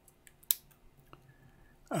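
A single sharp click about half a second in, with a few faint clicks and taps around it, as a camera, a Panasonic G7, is handled.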